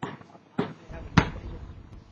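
Basketball dribbled on pavement: three sharp bounces about 0.6 s apart, the loudest a little over a second in.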